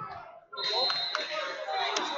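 Indistinct voices in a large hall. About a quarter of the way in, the sound jumps up and a steady high-pitched tone comes in and holds, with two sharp knocks close together soon after.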